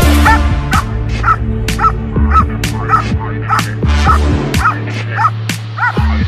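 Young German Shepherd barking repeatedly in high, sharp barks, about two a second, as it lunges on its line at a helper in a bite suit during protection training. Electronic music with a steady bass plays underneath.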